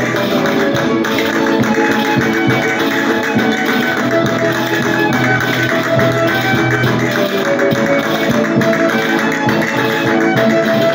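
Live Maestrat-style folk dance music: acoustic guitar and a smaller plucked string instrument strumming, a violin playing the melody, and a tambourine keeping the beat, at a steady, lively level.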